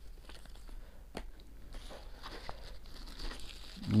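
Thin plastic wrapping and paper rustling and crinkling faintly as they are handled, with a light tap about a second in.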